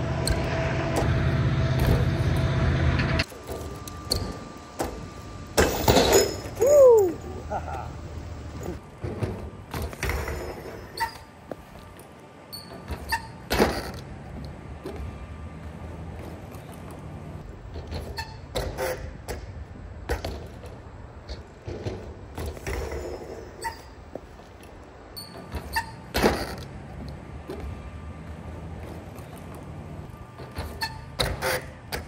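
A BMX bike being ridden on a skatepark ramp: tyres rolling, with sharp knocks and thuds of the bike landing and hitting the ramp every few seconds. A loud, steady rumble fills the first three seconds and cuts off suddenly.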